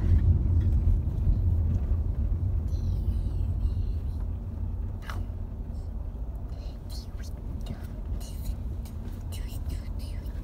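Deep, steady road and engine rumble heard inside a car's cabin while it drives, easing off somewhat about halfway through.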